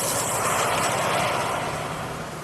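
Logo-intro sound effect: a loud, steady rushing noise.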